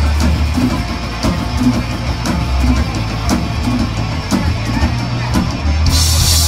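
Black metal band playing live, with the drum kit to the fore: a steady beat of about two drum strikes a second with cymbal hits, over a low bass that thins out after the first second and swells again near the end.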